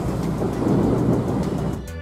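Car ferry's engines running with a steady low rumble and rushing noise as it comes in to dock; the sound breaks off just before the end.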